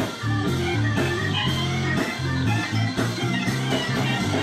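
A live blues band playing: electric guitar and organ-style keyboard over a bass line that steps from note to note, with drums keeping a steady beat.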